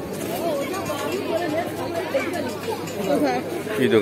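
Crowd chatter: several people talking at once in the background, with no single clear voice until one speaks up near the end.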